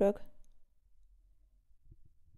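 A spoken word trails off at the start, then near silence with a faint low hum of room tone, broken by one soft, brief thump near the end.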